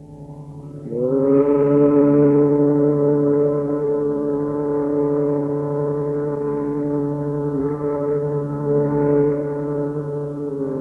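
Tanpura drone under a Hindustani classical male vocalist, who slides up into one long, steady held note about a second in.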